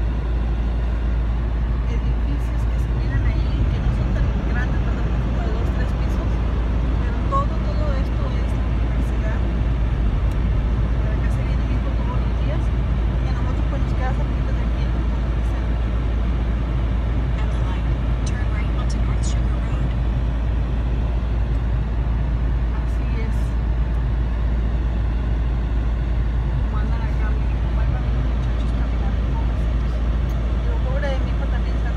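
Road noise inside a moving car's cabin: a steady low rumble of engine and tyres on wet pavement, with faint scattered ticks.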